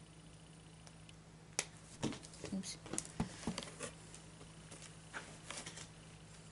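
Faint handling noises: a sharp click, then a couple of seconds of clicks, snips and rustling, and a few more near the end, as the tag is being cut off a plush dog toy with scissors. A low steady room hum runs underneath.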